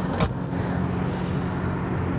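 Steady low hum of the motorhome's 12.5 kW onboard generator running, with a single short click about a fifth of a second in.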